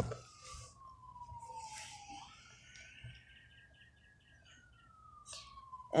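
Faint emergency-vehicle siren wailing: its pitch falls slowly, swings back up about two seconds in, climbs gently, then falls again toward the end.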